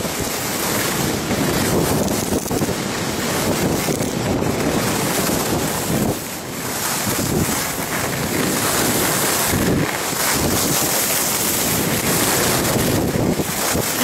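Wind rushing over the microphone of a skier's camera at speed, with the hiss of skis sliding on packed piste snow; the rush eases briefly about six seconds in.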